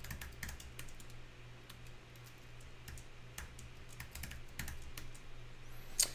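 Typing on a computer keyboard: an irregular run of light key clicks as a password is entered twice, over a low steady hum.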